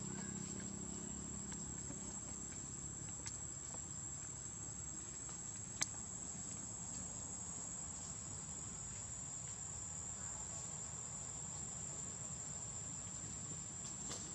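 Steady, high-pitched drone of insects calling without a break, with one sharp click about six seconds in.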